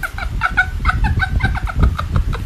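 Rapid run of short, high-pitched clucks like a chicken's, about seven a second, over a low thumping underneath.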